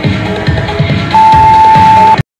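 Electronic dance music with a steady beat. About a second in, a single loud, steady beep lasting about a second sounds over it: the workout interval timer signalling the end of an exercise interval.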